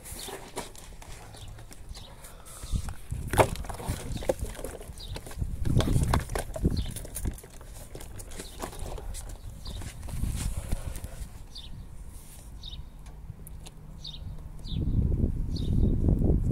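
Scattered taps, knocks and rubbing from hands and a squeegee working wet paint protection film on a car's plastic front splitter, the handling bumps heavier near the end. A bird chirps briefly again and again through the second half.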